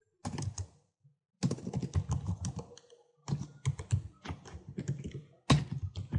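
Typing on a computer keyboard: quick runs of keystrokes in several bursts, broken by short pauses.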